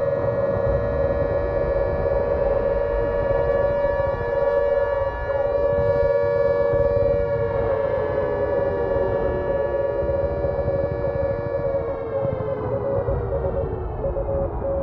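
A long siren-like wail: one loud steady tone that begins to slide slowly downward in pitch about halfway through, over a low rumble.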